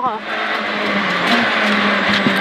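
Peugeot 206 XS Group A rally car's four-cylinder engine running flat out at high revs, heard from inside the cabin, with a steady note that lifts briefly about halfway through.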